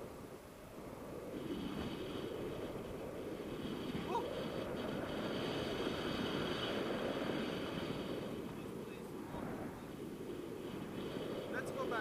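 Airflow buffeting the camera microphone on a tandem paraglider in flight, a steady rushing noise that swells and eases.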